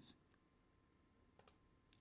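A few faint, short computer mouse clicks in the second half, over near silence.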